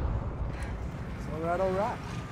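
A low rumble dies away after a loud hit, and near the end a voice calls out a short rising "hey".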